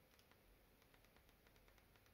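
Near silence: faint room tone with a scatter of very faint tiny clicks.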